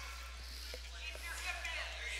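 Faint voices of people talking in a large, echoing gym, with a few small clicks and knocks.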